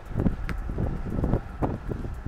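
Wind buffeting the microphone, with a few knocks of a football being played, the sharpest about half a second in.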